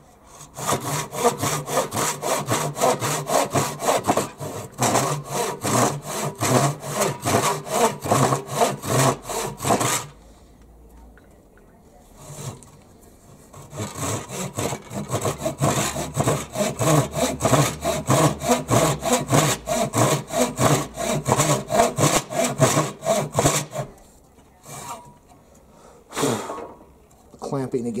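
Hand pull saw with a fine 15-teeth-per-inch, 10-inch steel blade cutting across a 2x4, in quick, even strokes about three a second. Two runs of about ten seconds each, with a pause of about four seconds between them.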